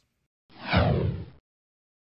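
Broadcast transition whoosh sound effect: a single falling sweep lasting just under a second, about half a second in, marking the cut from the studio intro to the interview.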